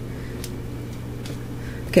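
Steady low background hum with a couple of faint soft ticks.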